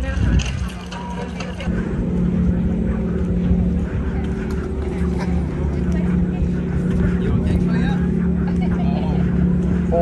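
An engine running steadily, a low drone with a held hum that dips briefly about a second in and then carries on unchanged, with voices of passers-by.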